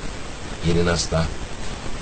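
Speech only: a man's voice says a single word, over a steady background hiss.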